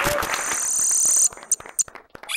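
Logo-animation sound effect: a steady high shimmer with a few whistle-like tones that cuts off sharply about a second and a quarter in, followed by two sharp clicks.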